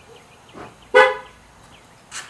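A vehicle horn gives a single short toot about a second in: one steady, flat-pitched note lasting about a third of a second. Just before it comes a fainter, brief rustling sound.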